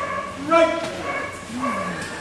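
Dog barking, loudest about half a second in and again shortly before the end, over voices murmuring in the hall.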